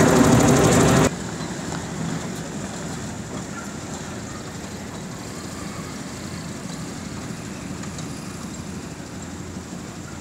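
Faint, steady hum of cars driving slowly along a near-empty road. In the first second a much louder engine noise with voices cuts off suddenly.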